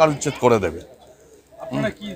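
A man's speech breaks off, and in the pause a pigeon coos briefly in the second half.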